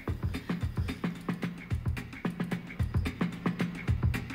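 Live band playing an instrumental intro: an electric guitar picks a steady rhythmic pattern, with low notes recurring about twice a second among sharp percussive clicks.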